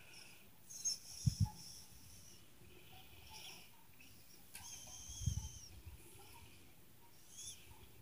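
Faint low thumps, two close together about a second in and another about five seconds in, over quiet room tone with faint high-pitched squeaks.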